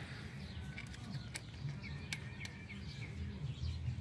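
Faint background with a few light, sharp clicks as a small screw is handled at the throttle position sensor on the throttle body, and faint bird chirps.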